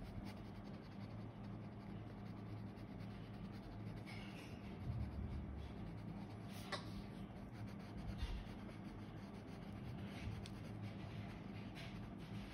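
Graphite Prismacolor pencil scratching faintly on sketchbook paper in short, repeated shading strokes, with a few small ticks as the tip meets the page.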